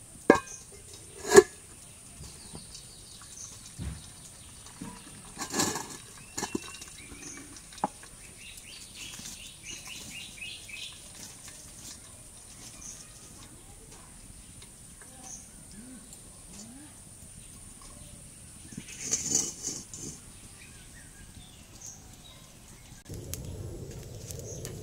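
Aluminium cooking pots knocking together: two sharp metallic clanks about a second apart near the start as one pot is tipped over a larger one, then a few softer knocks later on. Birds chirp in the background.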